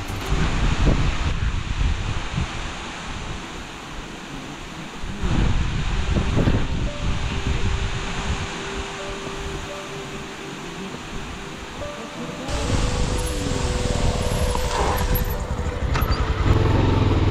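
Steady rushing of a waterfall with wind on the microphone, under faint background music; the noise changes abruptly a few times as the footage cuts.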